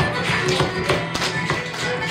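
Live Irish traditional dance music from a small band with guitars and a bodhrán, carried by a beat of sharp taps about three to four times a second.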